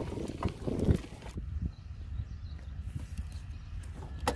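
Bicycle rolling over a rough dirt track: a steady low road rumble with sharp knocks and rattles from the bike and its handlebar mount over the bumps, mostly in the first second or so, then a quieter rumble.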